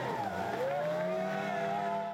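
Outboard motor of a power dinghy running hard through rapids, its pitch dipping and then climbing and holding, over the rush of whitewater.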